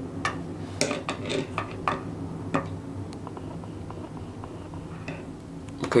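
Light metallic clicks and taps as a small adjustable wrench and a metal laser-diode module held in its jaws are handled and the jaw is set. The taps come in a quick run over the first two and a half seconds, then only now and then, over a faint steady low hum.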